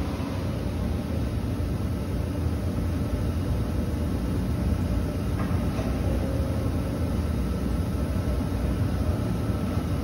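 Steady low mechanical rumble and hum of the surrounding plant, with a few faint steady tones above it.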